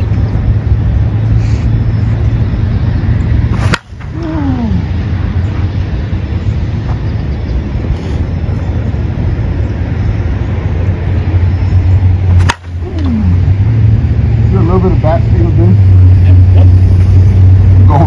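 Two sharp cracks about nine seconds apart, each a slow-pitch softball bat striking a pitched ball in batting practice, over a steady low rumble.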